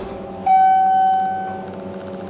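Schindler 300A elevator chime: a single electronic ding that sets in about half a second in and fades away over about a second, over the steady hum of the elevator car.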